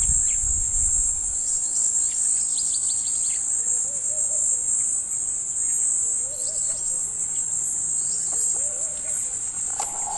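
A steady, high-pitched insect chorus trilling throughout, with a few faint short calls near the middle and end.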